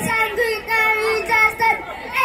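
A young boy's high voice singing into a microphone in short phrases of held notes.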